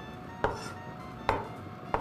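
Chinese cleaver chopping white mushrooms on a wooden cutting board: three sharp knocks of the blade on the board, a little under a second apart.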